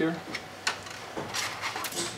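Plastic clicks and a short rattle from the black magazine-release lever inside an IBM TS3100 tape library being pushed back by hand to free the magazine: one click under a second in, then a quick cluster of clicks near the end.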